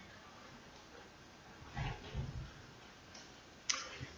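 Faint handling sounds at a wooden pulpit: a couple of soft low bumps about two seconds in, then a short sharp noise near the end, with the room otherwise quiet.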